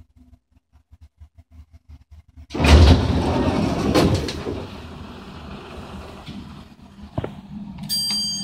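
Sliding doors of a Westinghouse hydraulic elevator opening on arrival at the ground floor: a sudden loud start about two and a half seconds in, after a few faint low ticks, fading over the next two seconds into a quieter steady noise.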